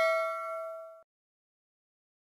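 Bell-like 'ding' sound effect ringing out and fading, cut off suddenly about a second in, then dead silence.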